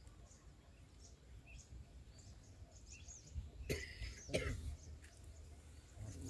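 Quiet outdoor ambience with faint high bird chirps scattered through it over a low rumble. Two short noisy sounds come close together a little past the middle.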